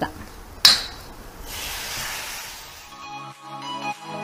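A steel ladle clinks once against the kadai, then a sizzling hiss follows as tomato slices go into the hot onion masala. Background music comes in near the end.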